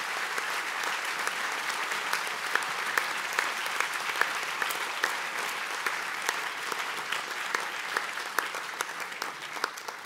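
Audience applauding: steady, dense clapping that begins to thin out near the end.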